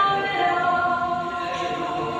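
A woman singing a slow ballad, holding long drawn-out notes.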